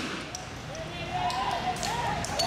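A voice shouting with a wavering, drawn-out pitch, and a few faint knocks.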